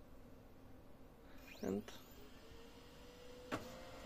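Brother DCP-1512E laser printer waking up to work: about a second and a half in a short rising whine climbs to a very high pitch as its mechanism spins up, then a faint steady hum sets in and runs on, with one sharp click near the end.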